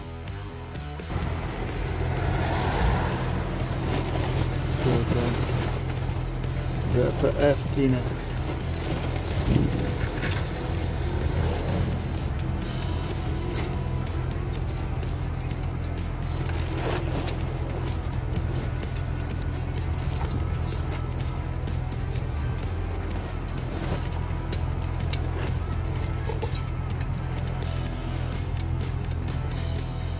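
Audi 3.0 TDI V6 diesel engine idling steadily. Music with a voice plays over the first several seconds.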